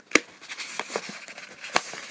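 A page of Yupo synthetic paper crinkling and crackling in a few irregular sharp snaps as it is pulled and twisted hard in an attempt to tear it; the sheet creases but does not tear.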